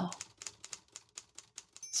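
Faint, irregular clicks of typing on a computer keyboard, a run of separate keystrokes.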